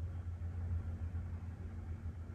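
Steady low room hum with a faint hiss over it, and no joint cracks or pops.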